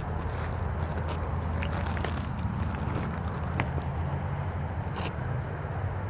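Faint footsteps crackling through dry grass and brush, a few scattered clicks over a steady low hum.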